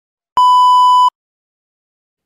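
A single steady electronic beep, one unchanging high tone lasting under a second, starting and stopping abruptly.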